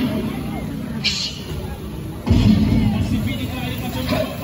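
Small motorcycles passing close by with their engines running, the loudest pass rumbling in just past halfway, over crowd chatter. A brief hiss comes about a second in.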